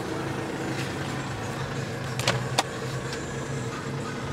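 Steady low hum of the Mercedes-Benz C200 CDi's four-cylinder diesel idling, heard from inside the cabin. A little past halfway, two sharp clicks close together as the glovebox is opened.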